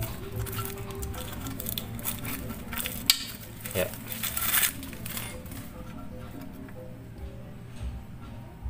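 Hand work on a scooter's kick-starter return spring as the cord holding it is pulled free: a sharp metallic click about three seconds in and a few brief scraping rustles, over a faint steady background of music.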